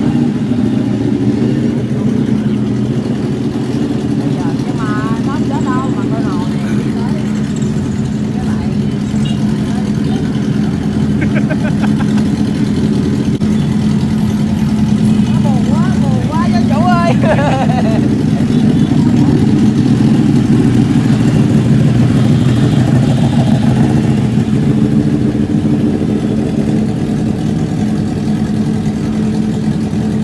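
Motorcycle engines idling steadily, with brief voices twice.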